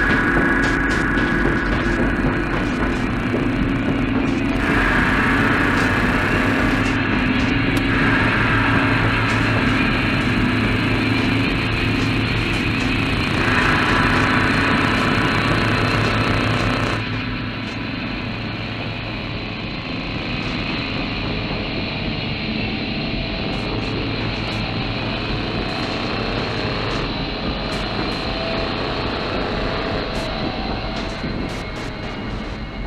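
A vehicle driving along a dirt road: a steady engine drone with tyre and road noise, and sustained tones above it that shift every few seconds. The sound drops in level about 17 seconds in.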